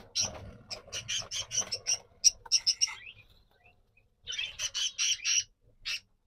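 Budgerigar squawking in two runs of quick, high calls, the second run shorter, while it is being caught in the hand.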